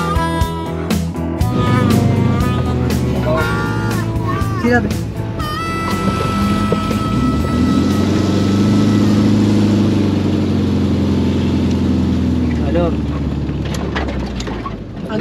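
Volkswagen Kombi's 1600 boxer engine droning in the cab as the van pulls uphill, with music and voices over it.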